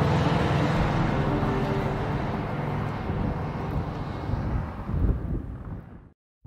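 Air-cooled flat-four engine of a classic Volkswagen Beetle running as the car drives off, a low rumble that gradually fades out and is gone by the end.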